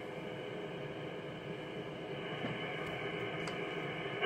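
Steady, even hiss of an Icom IC-7300 transceiver's receiver on 28 MHz lower sideband, with no signal coming through.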